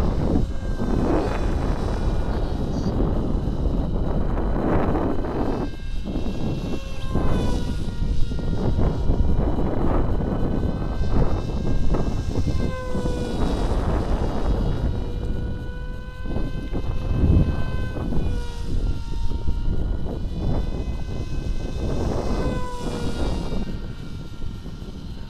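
Small electric flying wing's brushless motor and propeller (Quantum 2204 2300 kV on a Gemfan 6045 prop) whining in flight. The pitch rises and falls repeatedly as the wing flies around, over a steady low rumbling noise.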